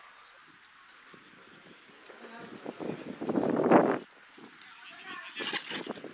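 People's voices, spectators or players talking and calling out, quiet at first and loudest about three to four seconds in.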